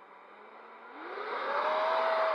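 The 90 mm electric ducted fan of a 6S HobbyKing SkyRay flying wing spooling up on a ground run: a whine that climbs in pitch with a growing rush of air, reaching a loud, steady full-power note in the second half.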